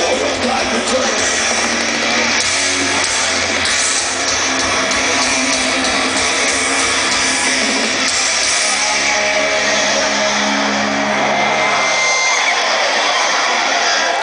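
A thrash metal band playing live through a festival PA, heard from within the crowd: distorted electric guitars, bass and drums, loud and steady. Long held notes ring out in the second half.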